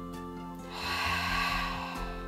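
Background music of held tones, with a long breath out starting a little under a second in and lasting about a second; the breath is the loudest sound.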